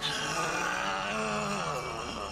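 A man's voice in one long, drawn-out groan, held with little change in pitch.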